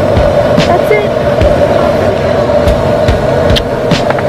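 Airliner cabin noise: a loud, steady drone of the jet engines and airflow, with a constant hum running through it.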